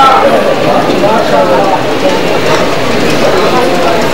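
A man's voice speaking loudly and continuously into a microphone: speech only.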